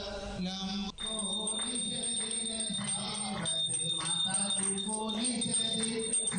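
Hindu mantra chanting by male voices, set to music, with a steady high ringing tone through most of it. There is a brief break about a second in.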